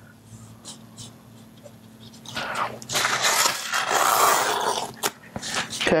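A strip of artist's tape being peeled off painting paper: after a quiet stretch, a rough ripping rasp starts about two seconds in and lasts about two and a half seconds.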